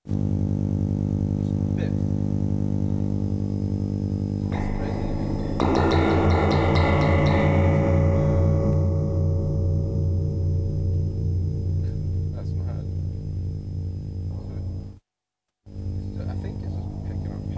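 Live electronic improvisation on hardware drum machines and synthesizers (Erica Synths Perkons HD-01, Soma Pulsar-23): a dense, distorted drone of stacked low sustained pitches. About five and a half seconds in it gets louder with a bright, noisy swell that fades over the next few seconds, and the sound cuts out for about half a second near the end.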